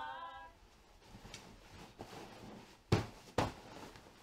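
Feather pillow being shaken and plumped by hand: two soft thumps about half a second apart near the end. Women's a cappella singing fades out at the very start.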